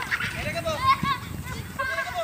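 Distant people's voices calling out in short rising-and-falling cries, with no clear words.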